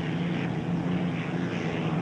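Unlimited racing hydroplane's V-12 piston aircraft engine running at racing speed, a steady drone that holds one pitch.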